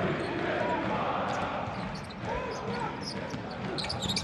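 A basketball being dribbled on a hardwood arena court, heard over a steady murmur of arena crowd noise with an occasional shout from the stands.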